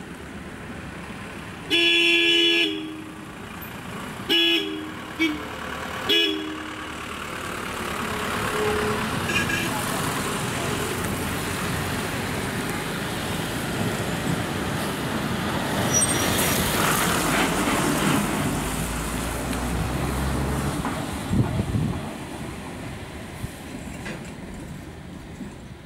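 A vehicle horn gives one long blast of about a second, then three short toots. Road vehicles' engines then grow louder from about eight seconds in, with a deep engine rumble later on as a KSRTC bus climbs through the hairpin and passes.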